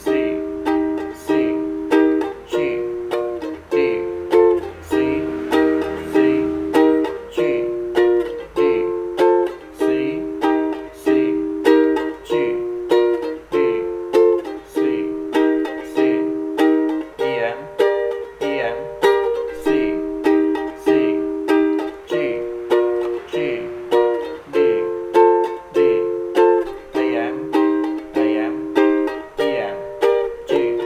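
Ukulele strummed in a steady, even rhythm, repeating the G–D–C–C chord progression with no singing.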